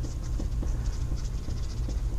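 Marker scratching and tapping on a whiteboard in a run of quick, faint, irregular strokes as a jagged squiggle is drawn.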